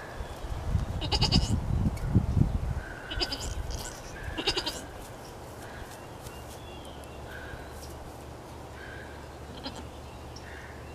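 Goat bleating: three short high-pitched bleats in the first five seconds and a faint one near the end. A low rumble on the microphone underlies the first three seconds.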